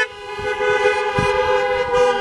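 Several car horns held down together in a long, steady blare.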